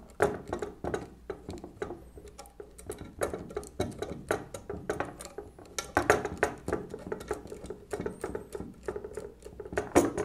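A screwdriver turning small steel screws into a plate on the frame of a 1920s Monroe model K mechanical calculator: a dense, irregular run of small metallic clicks and ticks as the blade works in the screw slots.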